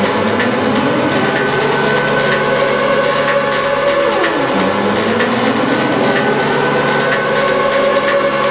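Experimental electronic music from a DJ mix: a dense, noisy drone with held tones. Pitch sweeps rise slowly and then drop back sharply about every four and a half seconds.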